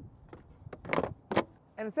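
Hands working the plastic parts of a truck's under-hood fuse and relay box: a short scraping rub about a second in, then a sharp click.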